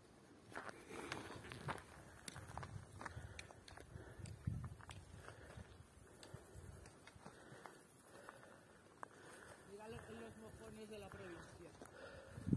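Faint, irregular footsteps and light taps on a dirt path, with a distant voice heard briefly near the end.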